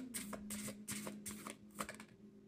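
A deck of tarot cards being shuffled by hand: a quick run of soft card flicks, about four or five a second.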